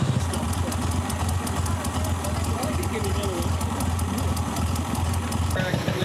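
A vintage cycle car's engine idling steadily, with a low hum and a fast, even ticking. It cuts off suddenly near the end.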